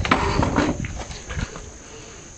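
Scuffing, rustling and light knocks of hands and bodies working at a potted bonsai's trunk and soil, loudest in the first second and then fading. Insects chirr steadily and thinly in the background.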